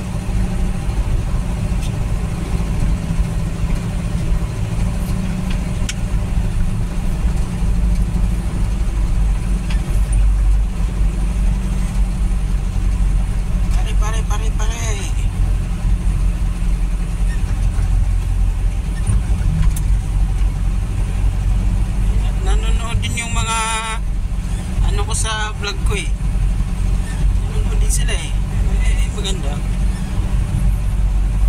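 Steady engine and road noise of a moving vehicle heard from inside its cabin, a continuous low drone, with brief voices breaking through a few times in the second half.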